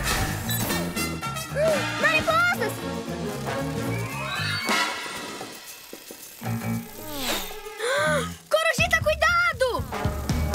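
Animated cartoon soundtrack: a lively background score with a steady beat, overlaid with sound effects. Among them are clusters of short warbling chirps about two seconds in and again near the end, and a rising sweep midway.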